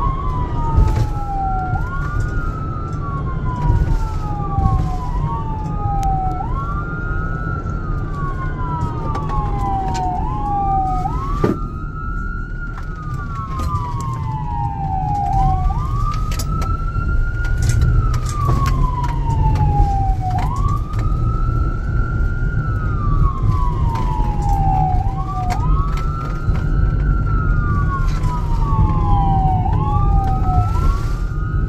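An EMS vehicle's electronic siren on wail, heard from inside the cab while driving: a tone that climbs quickly and slides slowly back down, repeating about every five seconds, over steady engine and road rumble.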